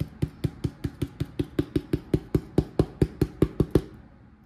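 Crumpled ball of aluminium foil dabbed quickly against a foam board, a steady run of sharp taps at about four and a half a second, pressing a concrete texture into the foam.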